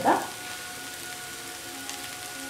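Shredded jackfruit stir fry sizzling gently in a wok, a steady quiet hiss.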